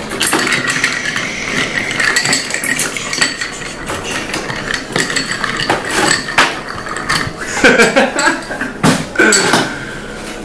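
Ice cubes clinking and rattling against a glass mixing glass as a metal bar spoon stirs a cocktail, a continuous run of small clinks. The drink is being stirred over ice to chill it.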